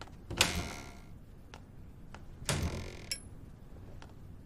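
Two short swishing slides at a wardrobe as clothes are taken out, about half a second and two and a half seconds in, the second ending in a sharp click. A couple of light footsteps on a wooden floor fall between them.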